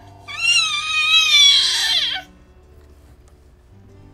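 A single high-pitched, wavering squeal lasting about two seconds and dropping in pitch at the end, over soft background music.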